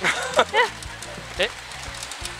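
A few short, excited vocal yelps over the steady din and music of a pachinko parlour, with one near the start, two close together about half a second in and one more near the end.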